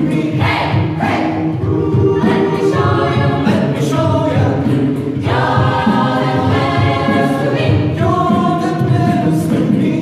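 A choir singing a song in sustained chords, the phrases changing every second or so.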